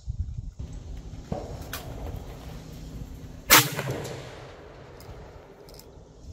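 A single 6.5 mm rifle shot about three and a half seconds in: one sharp crack that fades away over a second or so.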